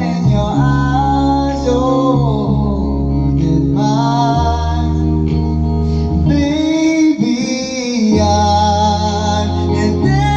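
A man singing karaoke into a handheld microphone over a recorded backing track, with sustained bass notes under his voice.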